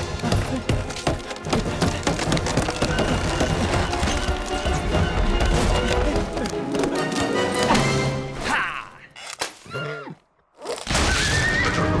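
Dramatic orchestral film score under action sound effects, with a horse whinnying.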